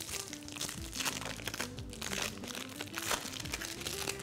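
Light crinkling and rustling as a cheese slice is peeled out of its wrapper by hand, over soft background music.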